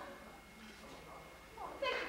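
A short meow-like cry near the end, rising in pitch, after a quiet stretch of faint room noise.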